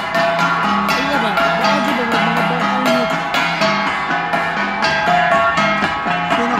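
Igorot flat gongs (gangsa) beaten in a steady, repeating rhythm as dance accompaniment, their metallic tones ringing on between strikes.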